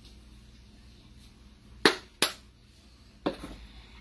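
Three sharp clicks from handling a plastic-capped spice jar of cumin: two close together about two seconds in, and a third about a second later.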